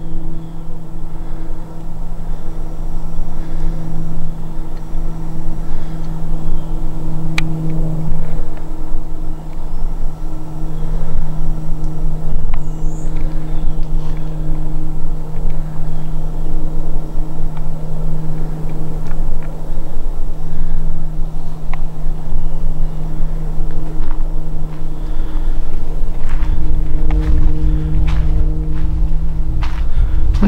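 A steady low mechanical hum that holds one constant pitch throughout, with a low rumble joining near the end.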